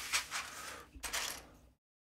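Hands picking through loose plastic building bricks on a plate: a run of faint small clicks and rustles that cuts off suddenly near the end.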